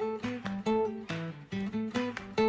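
Background music: a guitar strumming chords in a quick, lively rhythm.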